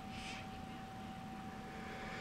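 One short sniff at a lip balm about a quarter of a second in, then a quiet room with a faint steady electrical whine.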